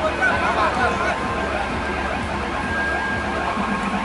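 Several voices of players and onlookers calling out and chattering at once, over a steady low background hum.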